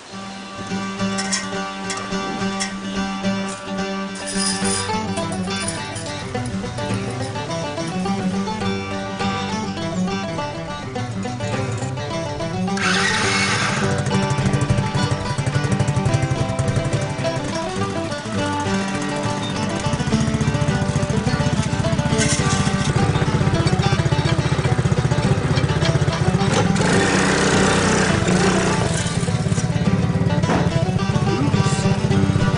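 Background music throughout. From about two-thirds of the way in, a small four-wheeler engine runs underneath it.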